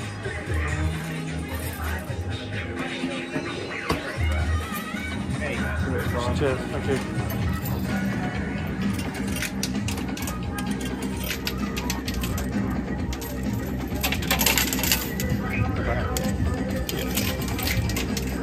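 Amusement-arcade background music with 2p coins clinking in a coin pusher machine. The clinks grow thicker in the second half, busiest about fourteen seconds in.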